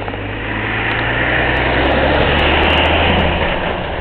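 A motor vehicle driving past close by: engine and tyre noise swells to a peak about two and a half seconds in and then fades, the engine note dropping in pitch as it goes by.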